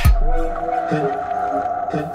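News-programme ident jingle: an electronic chord held after a swoosh and hit, slowly fading.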